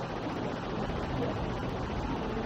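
Steady beach ambience: a continuous rushing noise of wind and surf, with faint distant voices.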